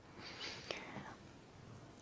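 A faint breathy whisper from an elderly man pausing between sentences, with a small mouth click partway through, then quiet room tone.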